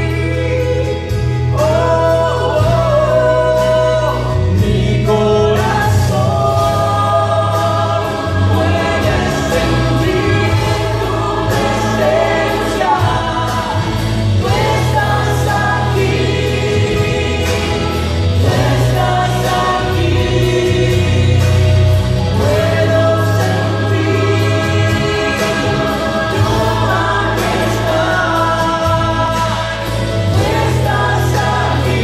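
Spanish-language Christian worship song, sung by a man and a woman through microphones over instrumental accompaniment with a steady bass line.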